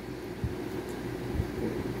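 Steady low background hum, with two soft low thumps, about half a second in and again near a second and a half in.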